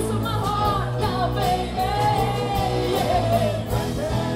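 Live rock band playing a song: sung vocals gliding over guitars, bass and a steady drumbeat.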